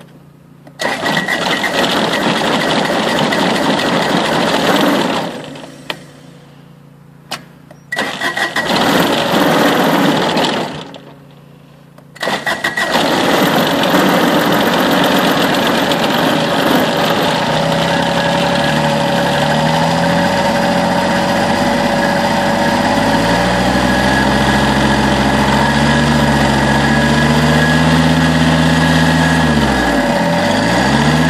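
Kubota BX compact tractor's diesel engine cranked on its starter after running out of fuel. Two tries of about four seconds do not fire. On the third, the engine catches after about five seconds of cranking, then keeps running and speeds up.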